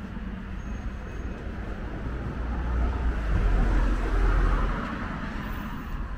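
A car driving past on the street beside the sidewalk: tyre and engine noise swells to its loudest about three to four seconds in, then fades, over a steady low traffic rumble.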